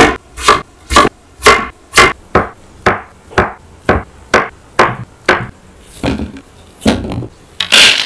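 Kitchen knife slicing through a tomato and then a block of paneer on a bamboo cutting board, the blade knocking on the board about twice a second. A louder, longer noise comes near the end.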